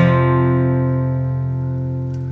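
Acoustic guitar: a chord strummed once at the start and left to ring, slowly fading.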